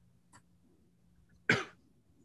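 A single short cough about one and a half seconds in, over a faint steady background hum.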